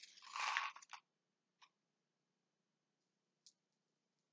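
A short noisy rustle lasting about a second, then two faint clicks over near silence.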